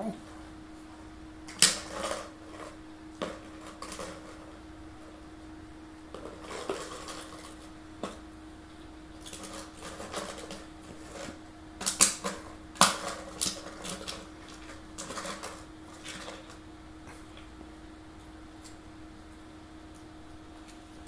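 A small dog nosing and pushing a plastic water bottle around to shake treats out of it: irregular crinkles, clicks and clatters of thin plastic, loudest about a second and a half in and again around twelve to thirteen seconds in.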